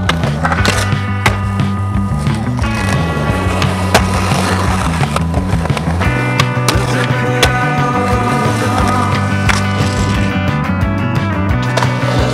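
Skateboard wheels rolling on concrete with several sharp board clacks and impacts, the strongest about four seconds in, under a song with a stepping bass line.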